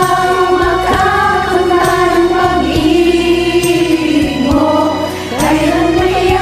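Several singers' voices layered together as a group, holding long sung notes over backing music in a karaoke collaboration recording.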